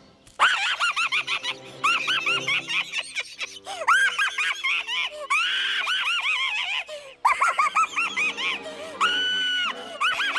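Rapid high-pitched cartoon vocal squeals and giggles in short rising-and-falling bursts, ending with one held squeal near the end, over background music.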